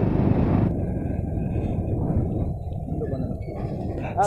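Steady low rumble of riding a Hero Splendor Plus motorcycle, engine and wind on the microphone blended together, with no clear engine note. A higher hiss fades out under a second in.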